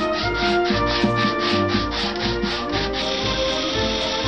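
Quick back-and-forth hand-sanding strokes on a wooden block over background music, giving way about three seconds in to the steady whine of an electric drill boring into a wood block.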